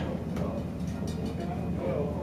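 Steady low rumble of a windmill's wooden gearing and vertical shaft turning, with a few light knocks, as the mill runs. Voices murmur faintly alongside.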